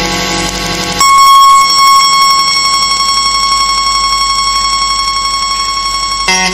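Music breaks off about a second in, and a loud, steady, high electronic buzzing tone takes over with a fast, even flutter, like a buzzer or alarm. It holds unchanged until the very end.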